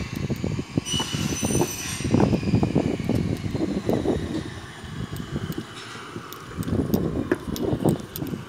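DN700 manual push sweeper rolling over stone paving, its wheels and side brush rattling and scraping with an uneven, clattering rumble. A brief high squeal comes about a second in.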